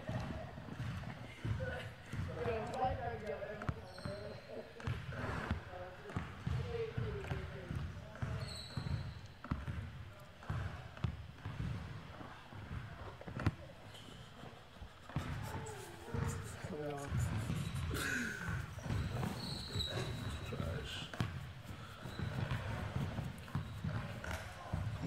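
A basketball bouncing again and again on an indoor court floor during a one-on-one game, with men talking over it.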